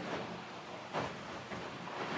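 Steady noise inside an offshore racing yacht's cabin while under way, with one short knock about a second in.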